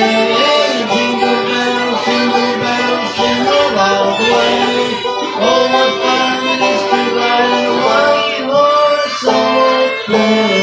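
Fiddle and five-string banjo playing together live, an instrumental passage with the bowed fiddle carrying held melody notes over the picked banjo.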